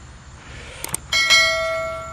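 A couple of faint clicks, then a single bell-like metallic ring struck about a second in, which dies away slowly.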